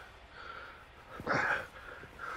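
A man's short strained grunt, about a second and a half in, as he struggles to squeeze into a low car seat while wearing a helmet.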